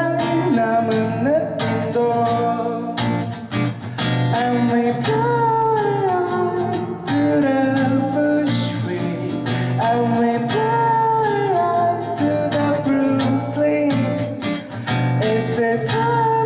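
A male voice singing over a strummed acoustic guitar, unamplified in a small room: a live solo acoustic performance.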